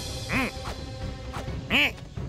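Two short squawking creature calls, each rising and falling in pitch, about a second and a half apart, over background music.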